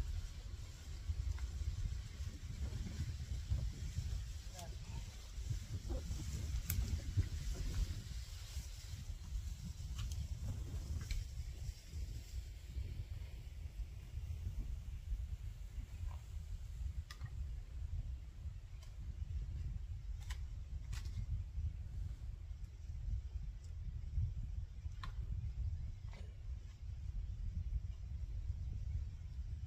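Wind buffeting the microphone, a steady low rumble, with a rustle of leafy cut branches being handled in the first half and scattered sharp clicks and snaps of twigs.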